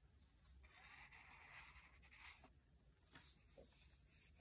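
Near silence with faint paper handling: a card postcard rustling and sliding against the journal's paper pages for about two seconds, ending in a small tap about halfway through.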